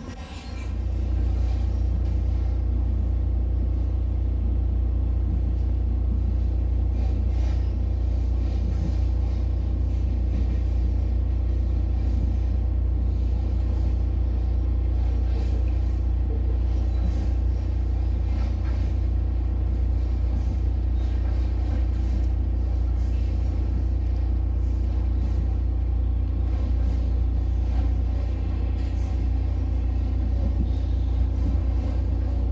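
Steady low rumble of a passenger train running, heard from inside the carriage; it comes up about half a second in and then holds even.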